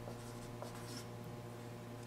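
Dry-erase marker writing letters on a whiteboard, faint, over a low steady hum.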